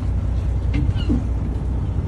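Lobster boat's engine running steadily, a low hum.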